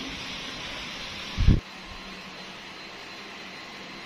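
Steady room hiss with one short low thump about one and a half seconds in, after which the hiss drops quieter.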